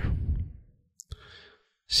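A man's voice trailing off at the end of a word, then a short mouth click and a breath drawn in before speaking again.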